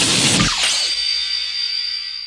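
Logo sting sound effect: a loud noisy burst with a low boom about half a second in, settling into a high ringing tone that slowly fades.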